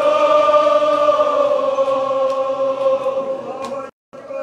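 A man's voice chanting a Muharram lament, holding one long note that sinks slowly in pitch before the sound cuts out abruptly near the end.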